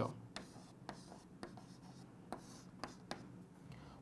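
Chalk writing on a chalkboard: faint, irregularly spaced taps and short scratches of the chalk as numbers and letters are written.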